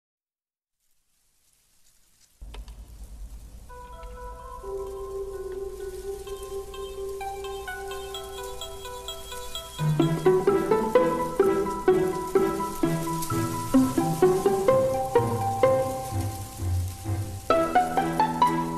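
Instrumental electronic backing track starting from silence: a low drone and long held notes enter after about two seconds. About ten seconds in, a beat with bass and quick higher notes comes in and the music gets louder.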